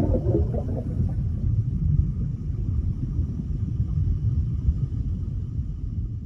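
Deep, steady underwater rumble of a water sound effect, with a few small bubbly pops in the first half second.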